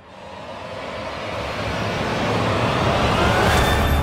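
Cinematic riser sound effect: a dense whooshing swell that builds steadily from silence, with a thin tone gliding upward and a low drone coming in near the end.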